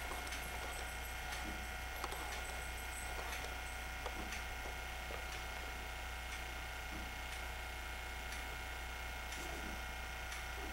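Steady low hum and faint mechanical whir with several steady thin tones and a few soft clicks.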